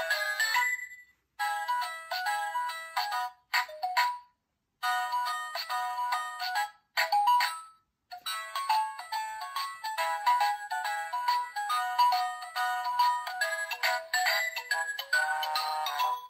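A children's sound book's small built-in speaker playing a tinny electronic melody in short phrases, with a few brief breaks between them.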